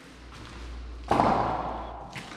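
A single loud thud a little past halfway through, fading out over most of a second, over a low steady rumble.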